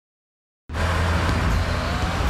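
Dead silence for just under a second, then a car driving starts abruptly: a steady engine and road rumble.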